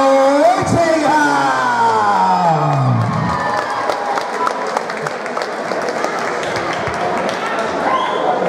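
Crowd in a hall applauding and cheering, with clapping and chatter. Over the first three seconds, music with a held vocal note slides down in pitch and stops.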